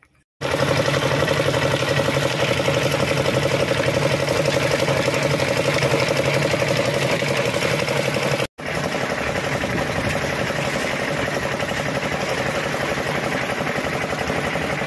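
An engine running steadily at a constant speed, with a fast even pulsing. It starts abruptly and breaks off for an instant partway through before carrying on unchanged.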